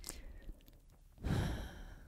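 A person's audible sigh, a breathy rush of air starting a little over a second in and fading out within a second.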